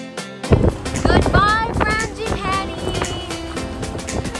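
Background music: a song whose quiet opening gives way about half a second in to a fuller sound with a steady beat and a sung vocal line.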